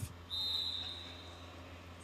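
A single steady high-pitched tone held for about a second, starting a moment in, over a low steady hum.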